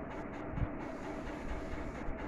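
A steady mechanical hum with a faint constant tone, with a short low thump about half a second in.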